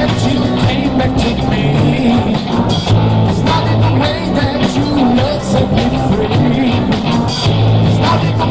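Live rock band playing a song, amplified, with a steady drum beat under bass and guitar lines.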